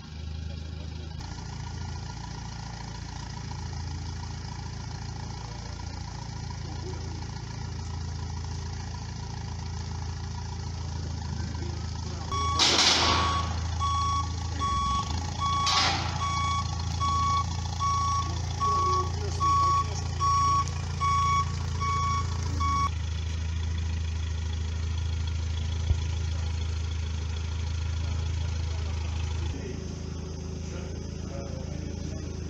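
Propane-fuelled forklift engine running steadily. Partway through, its reversing alarm beeps about once a second for roughly ten seconds, then stops. Two short bursts of noise come near the start of the beeping.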